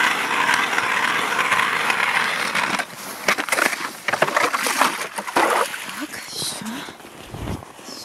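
Hand ice auger drilling into lake ice: a steady grinding for the first few seconds, then rougher crunching scrapes, with a low thump near the end.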